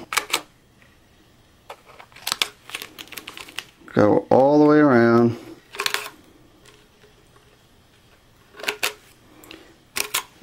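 Scissors snipping notches into tape around a Reflectix cozy: irregular short, sharp snips with pauses between them. A brief hum from a person's voice, about four seconds in, is the loudest sound.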